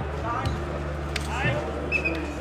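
Short shouts from players as a nohejbal point is won, with a sharp knock of the ball about a second in, over a steady low hum.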